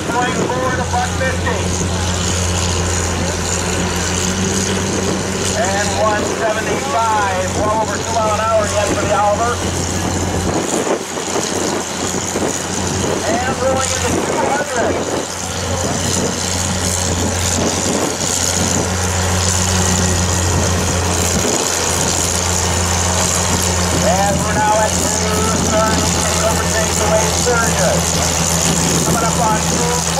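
Oliver farm tractor's engine running steadily under load as it pulls a weight-transfer sled at a slow, even pace, its low drone dipping briefly twice.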